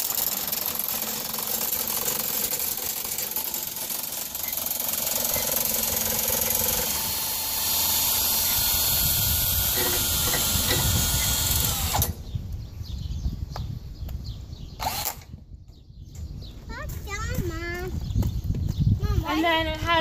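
Power drill running steadily for about twelve seconds, turning the barn's curtain roller shaft to wind a side curtain down, then stopping suddenly.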